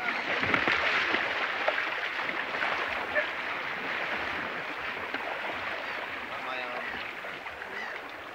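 Water churning and splashing around a double sea kayak as it paddles away through rough white water: a steady rushing noise that slowly fades.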